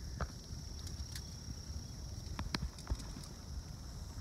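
Handheld camera noise and footsteps on a leafy forest floor: a low rumble of handling with a few sharp clicks and knocks, over a thin, steady high-pitched tone.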